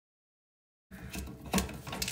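Dead silence for about the first second, then small irregular clicks and scrapes of a hand unscrewing the plastic coupling nut of a toilet's water supply line from the tank's fill-valve shank.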